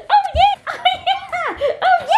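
Small curly-coated dog whining and yipping in a quick run of about six short, high-pitched cries, each rising and falling in pitch.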